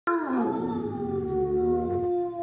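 Basset hound howling: one long howl that dips slightly in pitch at the start and then holds steady.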